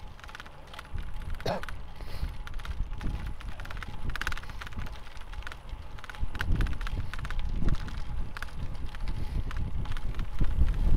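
Ride noise on a cyclist's own microphone while riding a road bike: a steady low wind-and-road rumble that gets louder about six seconds in, with scattered sharp clicks that the rider puts down to the handlebar-mounted drone controller clicking.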